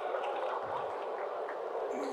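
Steady low background noise of a seated audience in a large hall, with no clear voice standing out.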